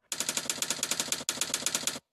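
Typewriter keys striking in a rapid, even run of about ten strokes a second, with a brief pause just past halfway, as a line of text is typed.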